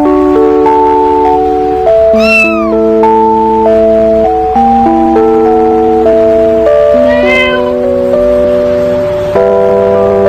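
Background music with a steady run of chords, with a cat meowing twice over it: a short arching meow about two seconds in and another about seven seconds in.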